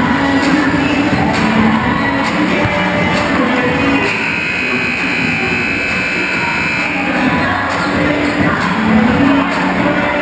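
Music playing through a large gymnasium during a break in play, with crowd noise beneath it.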